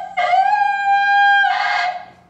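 A man's voice sliding up into a long, high sung note held steady for about a second, ending in a short breathy burst near the end.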